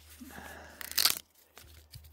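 Corn husks crunching and tearing in one short, sharp burst about a second in, as an ear of corn is handled.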